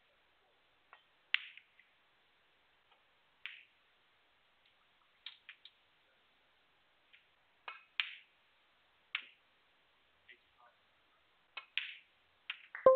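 Snooker balls being played: a scattering of short, sharp clicks a second or two apart, from the cue tip striking the cue ball and ball knocking against ball on the table.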